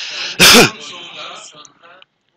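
A person sneezes once, about half a second in: a breathy intake, then a loud sudden burst that trails off.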